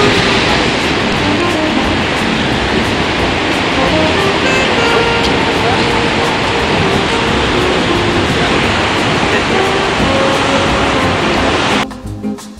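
Steady rushing noise of ocean surf breaking, with faint musical tones mixed in. It cuts off abruptly just before the end.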